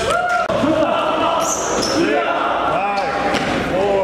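Indoor basketball game in a gym hall: players' voices and calls over a basketball bouncing on the hardwood floor, with the echo of a large room.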